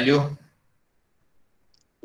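A man's voice finishing a spoken question in the first half-second, then near silence for the rest, the line cut off abruptly as in an online call.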